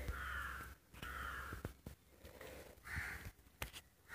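A bird calling faintly, three harsh calls, each about half a second long, with a few light clicks between them.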